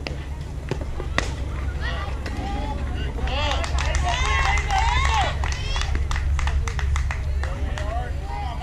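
A softball bat strikes the ball with one sharp crack about a second in, then several voices shout and cheer as the batter runs, loudest in the middle, over a steady low rumble.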